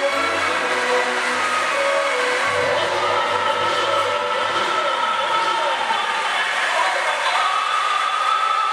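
Opera music with orchestra and singing from a projection show's soundtrack. Through the middle it is mixed with the sound of racing car engines, and a new held high note comes in near the end.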